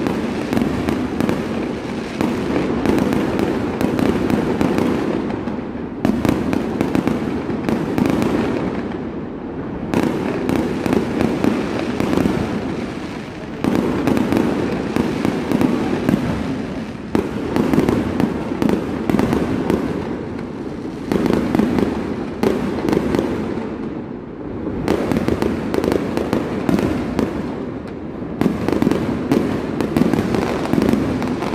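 A dense fireworks barrage: many aerial shells bursting in rapid succession, with a few brief lulls between volleys.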